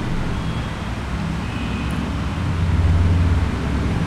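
Low steady background rumble that swells about two and a half seconds in and eases slightly near the end.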